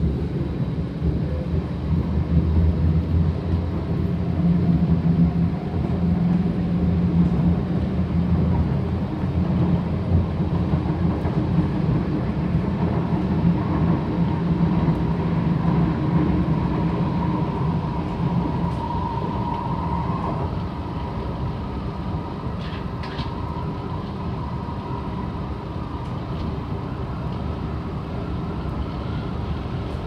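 Interior running noise of a Kawasaki Heavy Industries C751B electric metro train travelling at speed: a steady low rumble of wheels on rail. A thin high whine rises in partway through and stops about two-thirds of the way in, after which the running noise eases slightly.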